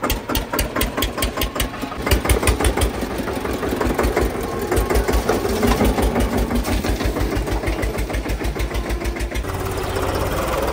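Eicher 242 tractor's diesel engine running close by, with evenly spaced firing thuds, about six or seven a second, that get louder from about two seconds in. Near the end a smoother, steadier engine sound takes over.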